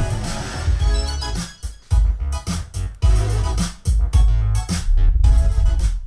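A song with heavy, beat-driven bass and sustained keyboard notes, played back through Sony XS-XB6941 4-way extra-bass oval car speakers in their cabinets and picked up by a camera microphone with its volume limiter on.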